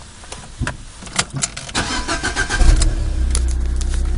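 A few sharp clicks, then a car's starter cranking with a whine until the engine catches about two and a half seconds in with a brief loud burst and settles into a steady idle.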